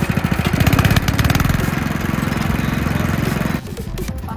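Small petrol engine running steadily as it drives a sugarcane juice roller crusher, with rapid, even firing pulses. The sound cuts off abruptly near the end.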